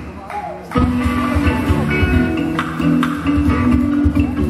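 Live band music: strummed guitars over a drum kit and hand percussion. The band drops back briefly at the start and comes back in at full level a little under a second in.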